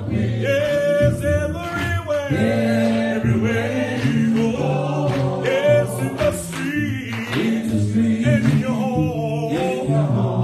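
A male song leader and a congregation singing a gospel song together, voices holding long notes.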